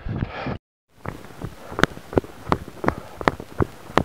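A jogger's footfalls in a steady running rhythm of about three strides a second, each one a short sharp knock. The rhythm starts after a brief gap of silence just under a second in.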